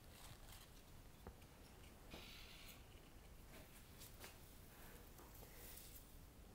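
Near silence, with faint rustles and a few small clicks from hands handling stems and foliage in a flower arrangement.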